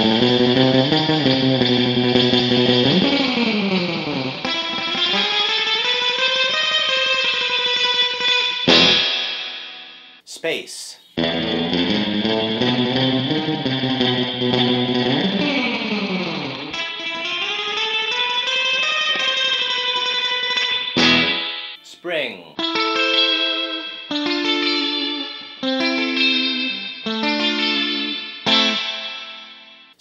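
Electric guitar, a Fender Stratocaster with single-coil pickups, played surf style through a very wet, drippy spring reverb. A picked phrase with sliding notes is played twice, breaking off for a moment in between. After that come short staccato notes, each leaving a long reverb tail.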